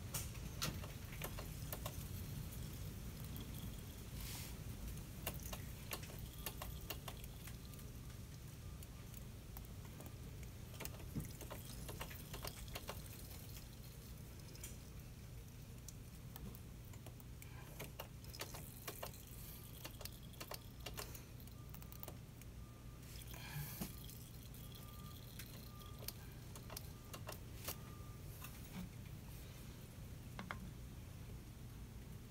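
Faint, scattered light clicks and small metallic taps of hands and a wrench working the bleeder valve on a motorcycle's rear brake caliper, over a steady low hum.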